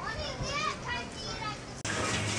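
Children's high-pitched voices calling out, cut off abruptly just before the end, when music starts.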